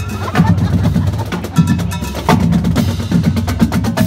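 Marching band playing: a drumline's rapid snare strokes over low brass and sousaphone notes.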